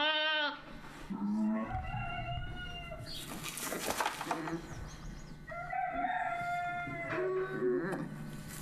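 Sheep bleating: newborn lambs' high, drawn-out calls, several of them, with a few shorter, lower bleats in between.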